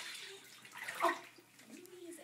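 Faint water sounds in a bathtub while a cat is being washed, with a soft "oh" about a second in.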